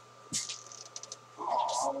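A short rustle, then a few light clicks; a man's voice starts near the end.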